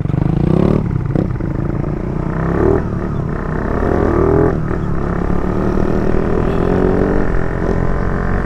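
Motorcycle engine pulling away and accelerating. Its pitch climbs and drops back a few times in the first half as it shifts up through the gears, then runs on at a steady speed.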